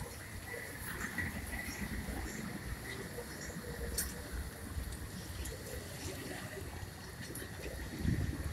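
Outdoor street background noise: a low, steady rumble with a few faint scattered clicks.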